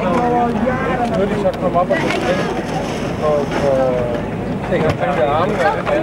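People talking among themselves over steady wind noise on the microphone.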